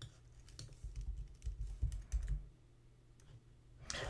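Keys typed on a computer keyboard: a scattered run of clicks in the first half, a short pause, then one or two more near the end, over a faint low hum.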